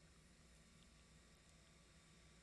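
Near silence: faint steady low hum of room tone.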